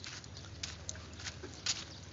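Light scuffing steps on a concrete road, about four in two seconds at a walking pace, the loudest near the end, over a faint steady low hum.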